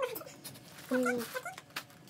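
Pump spray bottle of ethanol disinfectant spritzing in a few short hisses, alongside a woman's hummed 'mm'.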